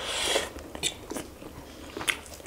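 Spicy instant noodles slurped into the mouth for about half a second, followed by wet chewing with short mouth clicks and smacks.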